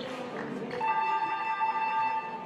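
Basketball arena's scoreboard horn giving one steady, buzzing tone, starting about a second in, during a stoppage in play after a foul is called.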